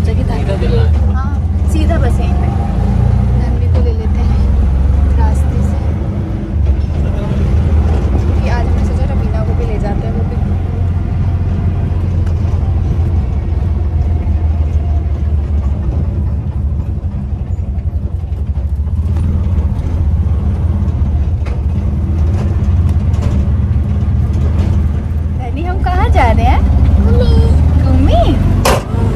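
Auto-rickshaw engine and road noise heard from inside the open passenger cabin as a steady low rumble while riding, with voices near the end.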